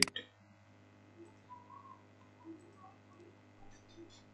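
A single mouse click at the very start, then near silence: room tone with a steady low hum and a few faint small ticks.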